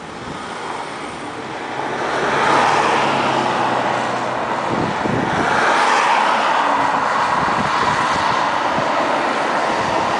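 Road traffic running past: a steady rushing of tyres and engines that swells as vehicles pass, about two and a half seconds in and again around six seconds. A low engine hum sits underneath in the first half.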